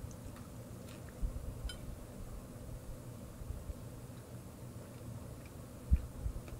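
Faint chewing of a bite of extra-thin, cracker-like pizza crust, with a few soft clicks and low thumps, the loudest thump just before the end.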